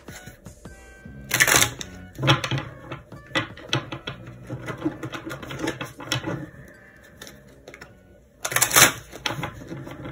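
A tarot deck being shuffled by hand: a quick run of small card clicks and flicks, with two louder swishes about a second and a half in and near the end. Soft background music plays underneath.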